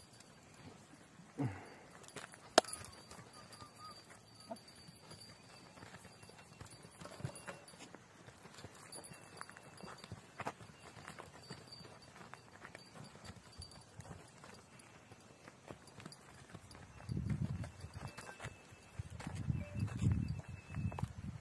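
Donkey hooves shuffling and stepping on dry, stony ground, with scattered sharp knocks, the loudest about two and a half seconds in. Bursts of low rumbling noise come near the end.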